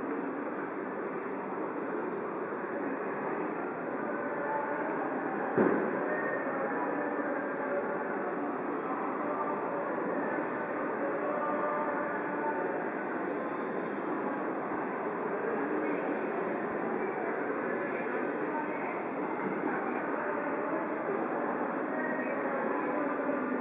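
Street ambience at a busy pedestrian crossing: a steady wash of crowd voices and traffic noise, with one sharp knock a little under six seconds in.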